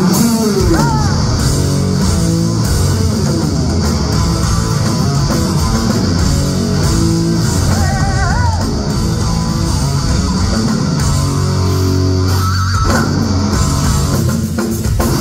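Live heavy rock band playing loudly through a hall PA: electric guitar and bass guitar over a drum kit, with sliding notes about a second in and again around eight seconds in.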